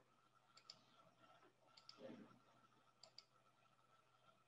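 Faint computer mouse clicks, coming in quick pairs three times about a second apart, with a brief soft rustle about two seconds in, over a faint steady high tone.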